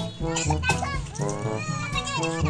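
Children's voices and chatter over music.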